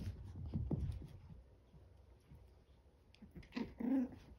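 Two chihuahua puppies play-wrestling on carpet: scuffling and soft bumps in the first second, then a few short, pitched puppy vocalizations near the end.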